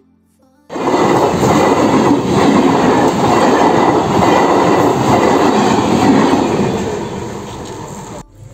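Indian Railways electric local train (EMU) passing close by: loud running noise of the coaches and wheels on the rails. It starts abruptly about a second in, holds, and begins to fade near the end.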